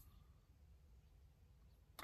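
Near silence: a faint low background rumble in a car cabin.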